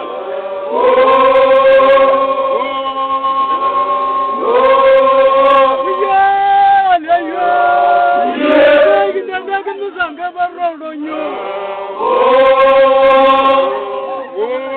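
Samburu traditional song: a group of voices singing together in chorus, in phrases of long held notes that start afresh about a second in, again about four and a half seconds in, and near the end.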